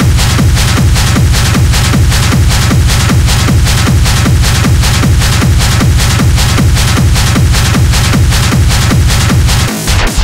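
Electronic dance music from a techno DJ mix: a steady kick drum about twice a second over a heavy bass line. The kick and bass drop out briefly near the end.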